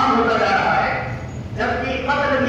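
Speech only: a man preaching to a congregation, talking in phrases with short breaks.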